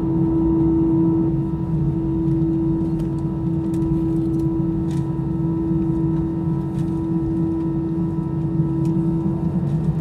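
Airliner cabin noise: the jet engines' steady hum with a constant whine over a low rumble, heard from inside the cabin while the aircraft is on the ground. A few faint clicks sound through it.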